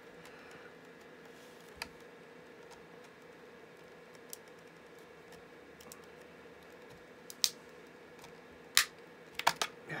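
Plastic battery case being pried open with a flat-head screwdriver: a few sharp, separate clicks and snaps as the blade works along the seam. The loudest come about seven and a half and nine seconds in, with a quick run of clicks near the end. A faint steady hum lies under it all.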